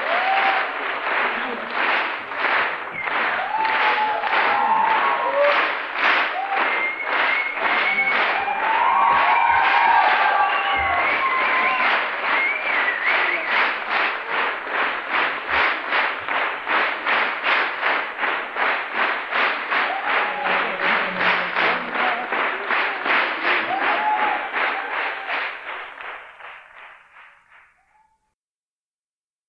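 Large theatre audience clapping in unison, about two claps a second, a rhythmic ovation with scattered shouts and cheers. It fades out over the last few seconds.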